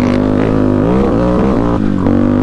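Yamaha Warrior 350's single-cylinder four-stroke engine, fitted with an FCR39 carburetor and a custom Rossier R4 exhaust, running under way. Its pitch rises from about a second in as it accelerates, then breaks briefly near the end.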